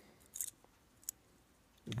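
A brief light scrape and then a single faint click as a small hinged metal compact, dug from the ground and holding broken mirror pieces, is turned over in the hand and its lid moved.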